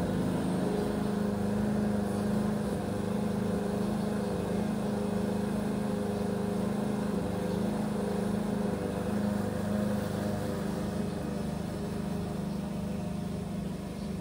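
A neighbour's lawn mower engine running steadily, a constant low drone with no let-up.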